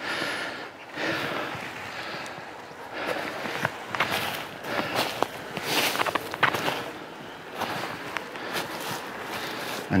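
Footsteps crunching through snow and frosted grass and brush, an uneven run of steps as someone walks.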